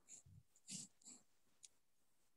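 Near silence, with a few faint, short breathy sounds in the first second and a single faint click.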